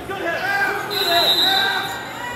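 Voices of spectators and coaches calling out around a wrestling mat in a gymnasium, with a steady high tone lasting about a second midway through.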